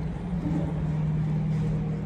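A motor vehicle engine running nearby: a steady low hum with rumble underneath.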